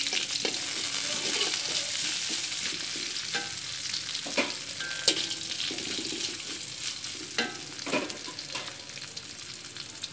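Sliced onions and chillies sizzling in oil in a steel wok while a slotted metal spatula stirs them. The steady frying hiss is broken by several sharp clicks and scrapes of the spatula against the pan.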